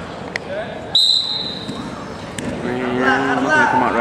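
Referee's whistle, one short blast about a second in, signalling the start of the second period of a wrestling bout from the referee's position. Shouting voices follow near the end.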